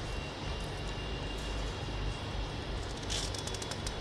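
Steady low background noise with a faint high whine, and a brief rustle of paper about three seconds in.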